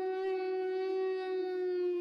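A single long, steady note on a horn-like wind instrument, held unbroken at one pitch.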